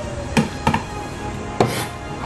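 Kitchen knife chopping garlic on a wooden cutting board: three knocks of the blade on the board, two close together and a third about a second later.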